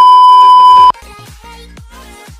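A loud, steady high beep lasting about a second: the test tone of a TV colour-bars glitch transition. When it cuts off, electronic dance music with a steady beat comes back in.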